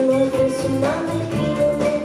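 A live band playing a song: electric guitars, bass, keyboard and drums under a sung vocal line, with held notes over a steady groove.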